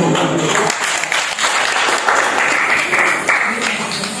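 A small audience clapping by hand, starting just under a second in as a man's speech ends and thinning out near the end.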